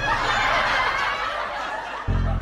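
Audience laughter from a sitcom laugh track, a diffuse wash of laughing that eases off slightly toward the end.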